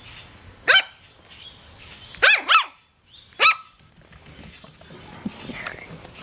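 Chinese Crested Powderpuff puppies barking in play: four short, high-pitched yips, one about a second in, two close together just past two seconds, and one more about a second later.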